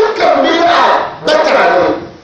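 A man's voice shouting or chanting into a microphone in two long, loud phrases with a brief break between them.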